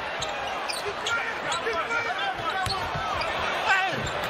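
Basketball being dribbled on a hardwood court, with scattered knocks of the ball, under the steady chatter of an arena crowd and players' voices.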